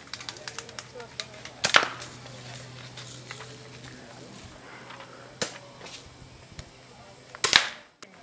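BB guns firing on a range: three sharp shots, a little under two seconds in, about five and a half seconds in and near the end, with a few fainter clicks between.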